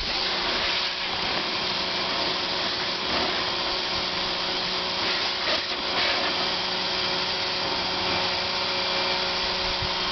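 Pressure washer running steadily, a motor hum under the hiss of the water jet as it washes mud off umbrellas.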